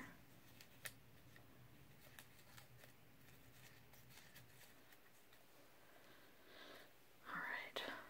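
Near silence: quiet room tone with a few faint clicks, and a brief quiet vocal murmur near the end.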